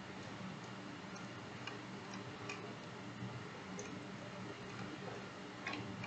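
Faint computer mouse clicks, a handful spread irregularly over several seconds while the document is scrolled, over a low steady hum.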